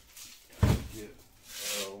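A full woven plastic sack set down on a concrete floor: one heavy, dull thump about half a second in, then a brief papery rustle of the sack's fabric near the end.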